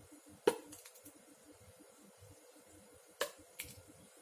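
A metal spoon clicking against a plastic measuring cup and ketchup bottle as tomato ketchup is spooned in: one sharp click about half a second in, then two lighter ones a little after three seconds.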